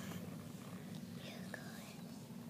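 A quiet room with a low steady hum and faint whispering from children.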